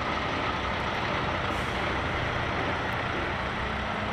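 Heavy diesel trucks driving past in a convoy: a steady engine sound with a broad rushing noise over it.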